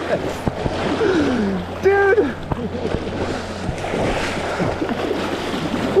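Water splashing and churning around a landing net as a netted steelhead thrashes in shallow river water. A voice shouts "Dude!" about two seconds in.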